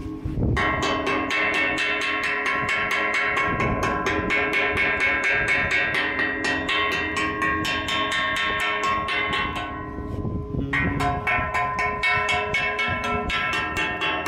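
Chipping hammer striking the rusty steel of a hose reel to knock off rust: rapid, even blows at about four a second, each with a metallic ring. The blows ease briefly about ten seconds in, then pick up again.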